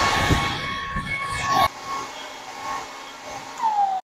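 Handheld hair dryer running, a rush of air with a steady motor whine. A little under halfway through it drops abruptly to a quieter level, and near the end it is switched off and the whine falls away as the motor spins down.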